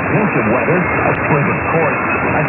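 Medium-wave AM broadcast received on 1290 kHz with a software-defined radio in synchronous AM mode: a voice talking through a steady bed of static hiss.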